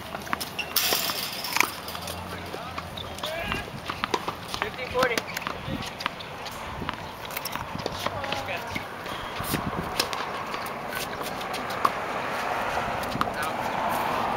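Tennis balls being struck and bouncing on a hard court: sharp knocks at irregular intervals, with voices in the background.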